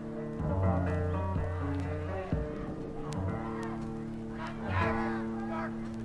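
Live rock band vamping between lines of stage banter: held organ chords over slow, low bass notes that change every second or two.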